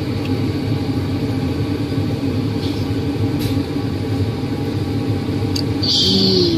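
A steady low rumble of background noise, even throughout, with no voice over it.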